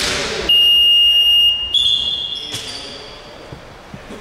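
A referee's whistle blown in one steady, shrill blast of about a second, about half a second in, stopping play. Sneaker squeaks on the gym floor come before and after it.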